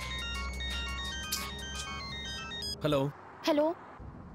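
A mobile phone ringtone playing a quick electronic melody of short beeping notes. It stops about three seconds in, and a man's voice answers briefly.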